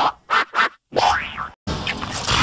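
Digitally distorted cartoon sound effects: two short blips, then a boing-like sound about a second in whose pitch rises and falls, and a dense burst of sound near the end.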